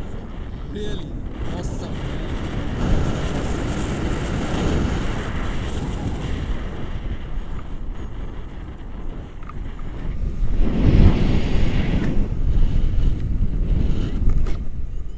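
Airflow rushing over an action camera's microphone during a paraglider flight: a steady low rumble that grows louder and gustier about ten seconds in.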